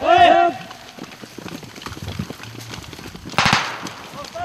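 Several soldiers shout together at the start, then soft scuffing and rustling of movement over dirt and grass, and a short, sharp rattling burst a little over three seconds in.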